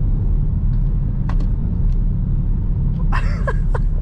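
Ford Mustang driving along, heard from inside the cabin: a steady low rumble of engine and road noise.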